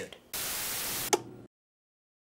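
A short burst of static hiss lasting under a second, ending in a sharp click, then cut to dead silence.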